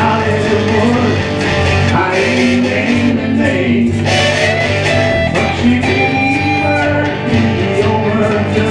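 A small live band playing a song: voices singing over guitar, with a steady low bass part underneath.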